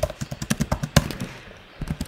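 Typing on a computer keyboard: a quick, irregular run of key clicks, thinning out in the second half.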